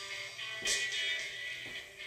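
Upbeat pop workout music playing at a low level, with one sharp beat about two-thirds of a second in.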